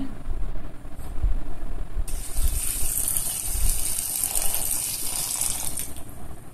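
Water running in a steady stream, starting about two seconds in as an even hiss, after a quieter low rumble of kitchen handling.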